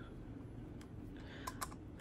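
A few faint light clicks of a small screwdriver turning the flathead screw that fastens a ring mechanism into a leather pocket planner, mostly in the second half.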